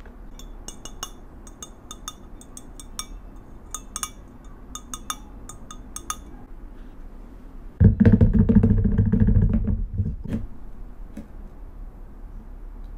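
Light clinks and taps of a ceramic pour-over dripper, metal filter and glass coffee server being handled, many small knocks with a bright ring over the first six seconds. Then comes about two seconds of a louder, low rubbing sound as the pieces are moved and set together, ending in a single knock.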